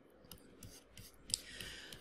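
Faint scattered clicks and small handling ticks, with one sharper click a little past halfway, then a soft intake of breath near the end.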